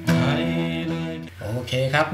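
Acoustic guitar played fingerstyle: a chord plucked right at the start rings out and fades over about a second. A man then starts speaking.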